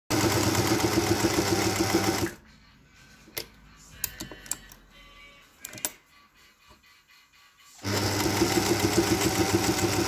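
Vintage Singer 201K electric sewing machine stitching through two layers of leather at a fast, even pace. It runs for about two seconds, stops, a few light clicks follow during the pause, and it sews again from about eight seconds in.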